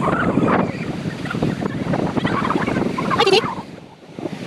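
Surf breaking on a beach with wind buffeting the microphone, and short calls mixed in. A brief sharp sound about three seconds in, after which the sound drops away.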